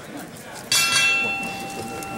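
Ringside boxing bell struck about two-thirds of a second in, signalling the start of round one, its clear tone ringing on and slowly fading over crowd chatter.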